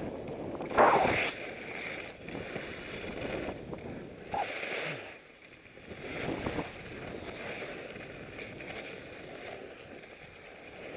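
Skis scraping and swishing over bumpy, chopped snow through a run of turns, the loudest scrape about a second in.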